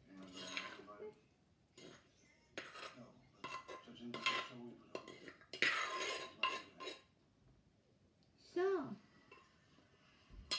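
A metal spoon scraping and knocking against the inside of a large clay mortar as cucumber salad is scooped out onto a plate, in a series of strokes over the first seven seconds. A short sound falling in pitch comes near the end.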